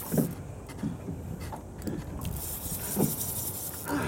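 Steady wind and water noise aboard a small boat at sea, with a few soft low knocks on the deck.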